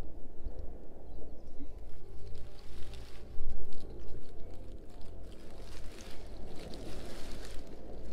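Soft background music with low bass notes under outdoor rustling noise, loudest about three and a half seconds in, as a hand pushes through wet wrack seaweed on the rocks.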